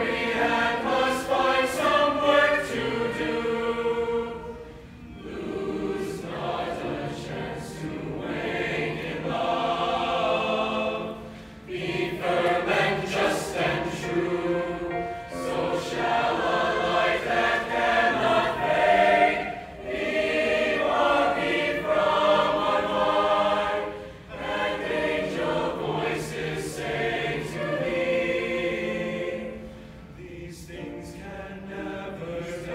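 Large mixed choir of treble and male voices singing in phrases a few seconds long, with brief breaks between phrases.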